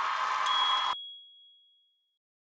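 Audience noise from the stage cuts off abruptly about a second in. About half a second in, a single bright chime sounds as the streaming channel's logo sting, ringing on as one high tone and fading away by the end.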